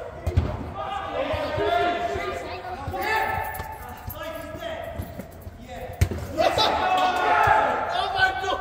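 A football being kicked and bouncing on artificial turf, with a few thuds about half a second in and the loudest kick about six seconds in. The sound carries in a large inflated sports dome, and players are shouting.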